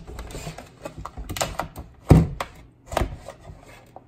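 Knife blade scraping and clicking down the inside wall of a plastic tub, prying a cured block of beeswax loose from the plastic, with two louder knocks about two and three seconds in.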